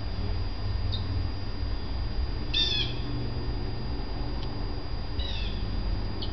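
A small bird chirping: two short bursts of a few quick falling notes, the first about two and a half seconds in and the second near the end, with a couple of fainter single chirps between, over a steady low rumble.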